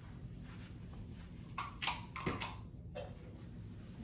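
Quiet handling sounds: a handful of light knocks and taps in the second half as small kitchen decor pieces are moved and set down on a wooden riser on the countertop.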